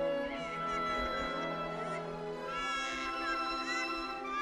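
An infant crying in two long cries, heard over background music of sustained instrumental notes.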